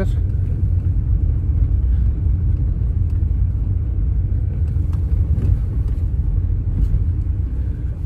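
Steady low rumble of a car's engine and tyres heard inside the cabin while driving slowly along an unpaved dirt road, with a few faint knocks from the rough surface.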